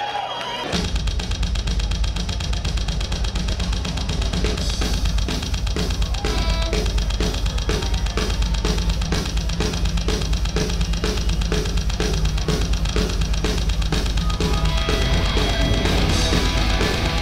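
Live punk rock band: the song comes in about a second in with drum kit, bass and electric guitar playing a steady beat, the drums to the fore with kick, snare and cymbals.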